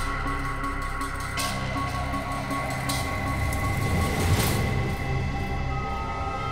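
Tense dramatic background score of held tones and low sustained notes, swelling to a rising whoosh about four seconds in.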